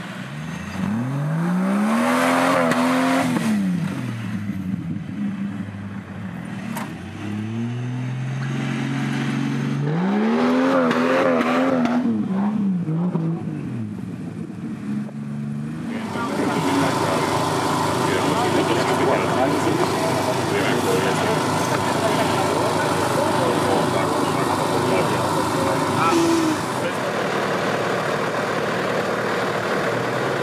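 Off-road 4x4 engine revving, its pitch climbing and falling back twice, a few seconds apart. About halfway through this gives way abruptly to a steady mix of engine noise and indistinct voices.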